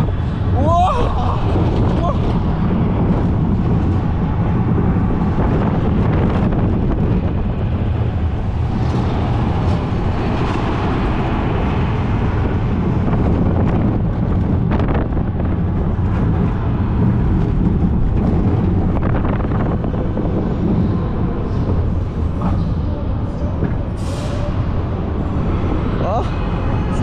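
Shredder roller coaster car running along its steel track: a loud, continuous rumble of the wheels on the rails, with rushing air buffeting the microphone.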